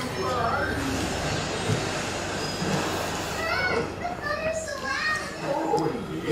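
Children's voices, talking and playing, with a steady rushing noise from about one second in to about three and a half seconds in.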